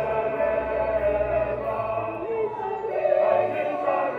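Choir and congregation singing together, many voices holding sustained notes.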